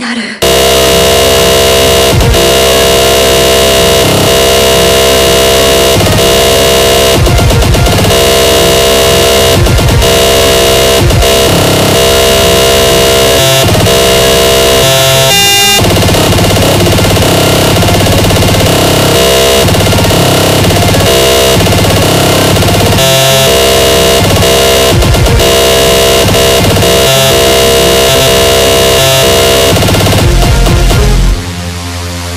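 Terrorcore/extratone electronic music: a dense, very loud wall of distorted synths and kick drums so fast (up to 4000 BPM) that they merge into buzzing tones. A moment's break right at the start, then it runs on without let-up.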